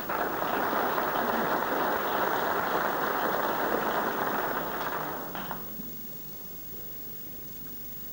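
Audience applauding in a snooker arena after a pot, then dying away about five and a half seconds in.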